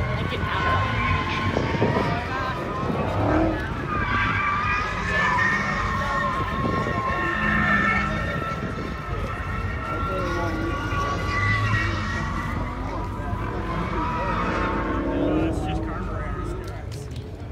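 Outdoor car-show background: a distant car engine running with slow rises and falls in pitch, over a steady low rumble and indistinct voices.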